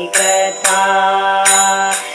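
Devotional bhajan music holding one long steady note, with three sharp strikes keeping time over it.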